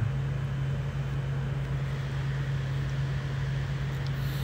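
A steady low hum with a soft hiss of background noise, unchanging throughout.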